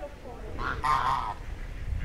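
A domestic goose honking: a short call, then a louder, longer honk about a second in.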